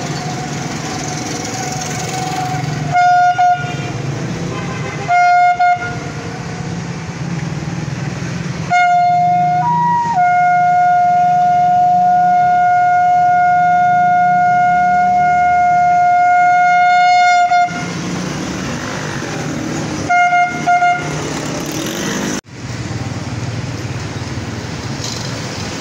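A curved horn trumpet blown in steady single-pitch blasts: two short toots, then one long held note of about nine seconds that jumps briefly higher near its start, then a quick double toot. Low street noise runs underneath.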